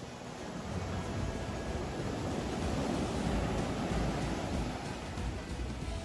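Ocean surf breaking and washing up the shore, swelling to a peak midway and easing off toward the end, with light wind on the microphone.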